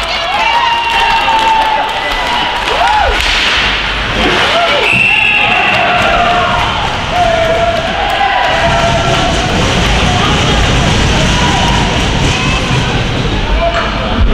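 Shouting and calling voices of players and spectators at an ice hockey game, with scattered sharp knocks from sticks, puck and boards.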